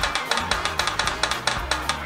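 Drum roll sound effect, rapid even strokes building up to the announcement of a winner.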